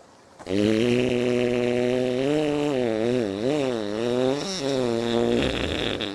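A long fart noise, about five seconds long: a buzzing, pitched sound that wobbles up and down in pitch, starting about half a second in.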